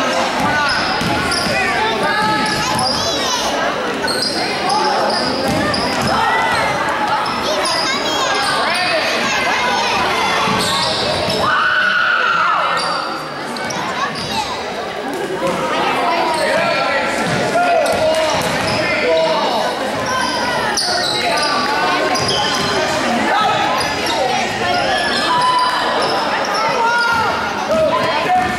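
A basketball dribbled on a hardwood gym floor during play, with players' and spectators' voices and shouts going on throughout, reverberating in a large gymnasium.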